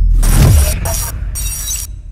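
Electronic intro sound effects for an animated logo: a deep boom fading out in the first half second, then a string of short, abrupt bursts of glitchy hiss that stop and start.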